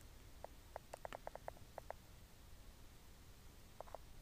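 Near silence broken by a quick run of faint short clicks about half a second in, and two more near the end.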